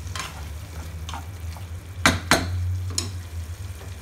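A cooking utensil scraping and knocking against a pan as onion pieces are stirred into a thick tomato masala gravy, with the gravy sizzling underneath. There are several separate scrapes, the loudest a pair about two seconds in.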